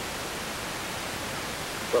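Steady, even hiss with no distinct sound in it: the noise floor of the recording. A voice begins right at the very end.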